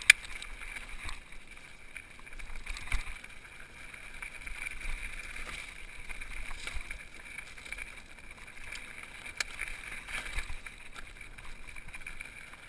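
Mountain bike rolling down a rocky gravel singletrack: steady tyre and frame rattle with wind on the microphone, broken by a sharp knock just after the start and another about three seconds in.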